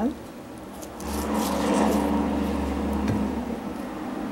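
Serrated knife cutting through a soft avocado, with a few faint clicks. A steady low hum starts about a second in and covers it.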